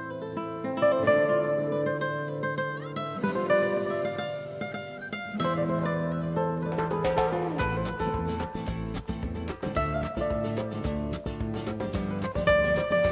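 Background music led by plucked strings, which becomes fuller and more rhythmic, with quick repeated strokes, about seven seconds in.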